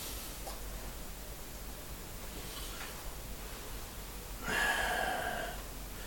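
Steady low room hum, with one audible breath out lasting about a second, a little past the middle.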